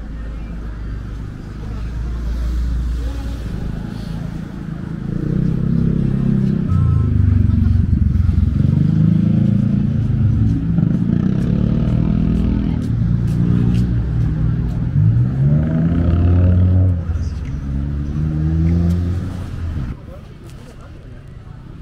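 A road vehicle's engine revving and accelerating on the street alongside, loud, its pitch climbing and dropping several times as it goes through the gears, building from about five seconds in and fading just before the end.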